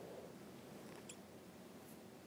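Near silence: room tone, with a couple of faint, brief high clicks about a second in and near the end.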